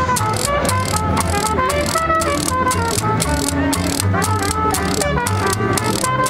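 Small street jazz band playing live: trumpet carrying the tune, with trombone and banjo, a plucked double bass and a washboard with cymbals keeping a steady beat.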